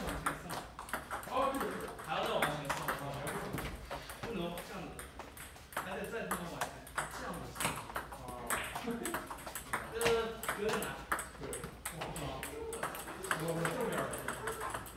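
Table tennis multiball drill: ping-pong balls fed in quick succession and struck with paddles, each ball clicking off the bat and bouncing on the Stiga table in a rapid, unbroken run of hits.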